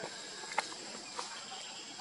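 Outdoor forest ambience with a steady high insect drone, and two faint clicks about half a second and a second in.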